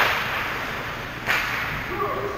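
Two sharp snaps from ice hockey play, about 1.3 s apart, each trailing off in a short hiss that rings in the large rink.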